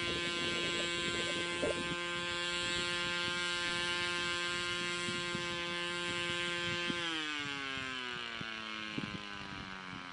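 Brushless outrunner motor (HIMAX 2816-1220) on an electric Zagi flying wing driving an 8x6 propeller, a steady whine heard from a distance. About seven seconds in, the pitch falls smoothly as the throttle comes back and the motor winds down. Wind buffets the microphone now and then.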